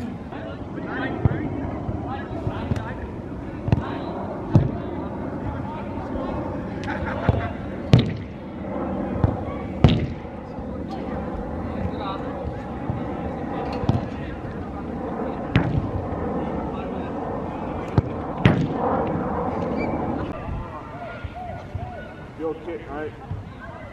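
Football being kicked, with sharp irregular thuds of the ball struck and hitting the pitch boards, the loudest two around the middle, over men's voices calling out.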